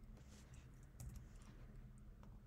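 A few faint computer keyboard keystrokes, short separate clicks with pauses between them.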